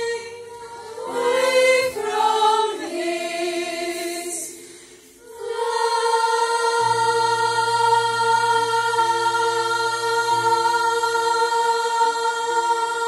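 Children's choir of girls singing: a short moving phrase, a brief drop in level about four to five seconds in, then a long held chord.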